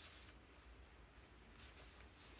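Faint rustling of a paper letter being handled and unfolded, a little louder near the start and again near the end, over a low steady hum.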